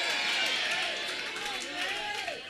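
Faint room hiss with a quiet, indistinct voice in the background.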